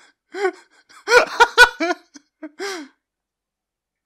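A man laughing in a run of short, pitched, breathy bursts, with a couple of sharp clicks in the middle; the laughter stops about three seconds in.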